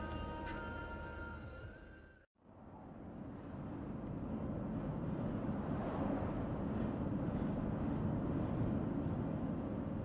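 Music fades out over the first two seconds. After a sharp cut, steady road and tyre noise of a car driving at speed takes over, heard from inside the cabin. It swells as the car draws alongside a lorry's trailer.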